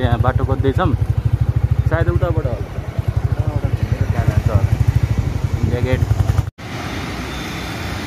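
Motorcycle engine running under way, a loud low rapid beat of firing pulses, with a few brief bits of voice over it. The sound cuts off abruptly about two-thirds of the way through and is replaced by a steady wash of road-traffic noise.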